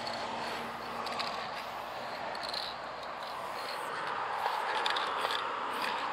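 Aerosol spray paint can hissing in a series of short bursts as paint is sprayed onto a wall.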